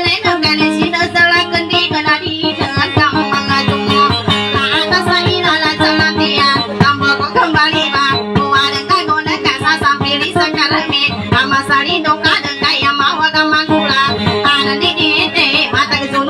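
A dayunday song: a woman singing to an acoustic guitar, the guitar strummed in a quick, steady rhythm.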